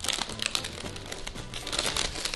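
Clear plastic cellophane treat bag crinkling irregularly as a child handles it, opening it to drop a Play-Doh tub in.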